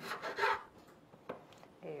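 Kitchen knife cutting through a lime onto a wooden cutting board: one short cut in the first half second, then a light tap about a second later.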